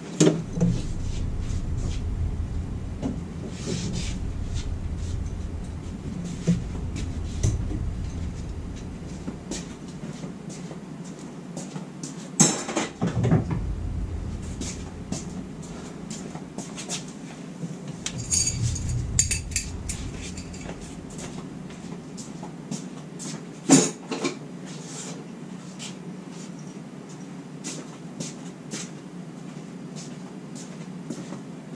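Metal hand tools and parts clinking and knocking, with scattered small clicks throughout and two sharper, louder knocks, about twelve and twenty-four seconds in. A low rumble lies under the first ten seconds and comes back briefly near twenty seconds.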